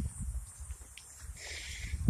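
Footsteps on grass while walking with a handheld phone: soft irregular low thuds, with a short faint hiss near the end.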